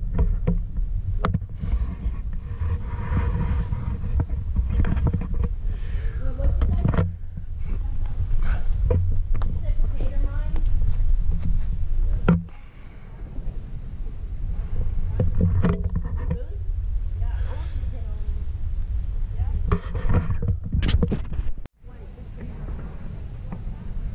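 Wind buffeting a handheld camera's microphone, a continuous low rumble, with faint indistinct voices at times.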